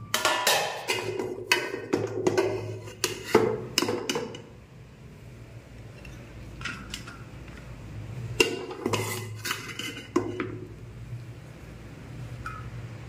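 Steel ladle clinking and knocking against an aluminium cooking pot and a steel plate as boiled rice is served. There is a busy run of knocks for the first four seconds, a quieter spell, then another short cluster of clinks.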